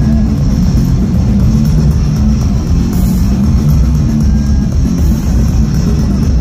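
Live metal band playing an instrumental passage: distorted electric guitars, bass and drums, loud, dense and steady, with no vocals.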